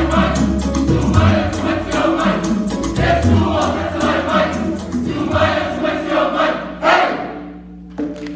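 Group of children and adults singing together in a choir, over low bass accompaniment that drops out about five and a half seconds in; the song closes on a loud last note about seven seconds in, after which the sound falls away.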